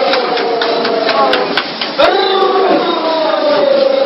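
A voice holding long, wordless tones that fall slowly, with a fresh one rising in about halfway through, over irregular sharp knocks.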